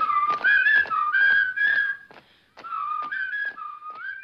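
A whistled tune of held notes stepping between a few pitches, over a steady tread of footsteps, about three a second. It breaks off briefly about two seconds in, then resumes.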